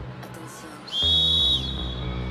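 One sharp, steady whistle blast of about two-thirds of a second, starting about a second in and the loudest sound here. It sounds over a pop backing track whose heavy synth bass drops out for the first second and comes back with the whistle.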